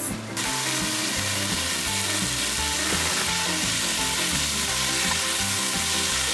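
Marinated chicken and cabbage (kei-chan) sizzling steadily on a hot griddle plate over a portable gas stove, being turned with a spatula. The sizzle starts about half a second in.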